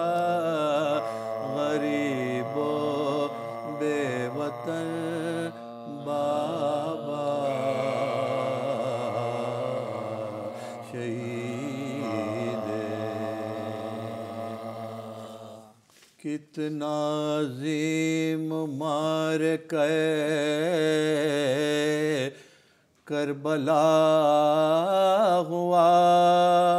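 Men's voices chanting a slow, unaccompanied Shia Muharram lament (noha) in long held, wavering notes. The singing fades out about two-thirds of the way through, then a new phrase starts, with another short break near the end.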